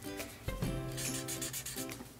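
Pink felt-tip marker rubbed back and forth on paper in rapid repeated strokes; the marker has dried out. Background music plays underneath.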